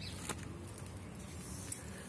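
Quiet background ambience with a faint low hum and one short click near the end.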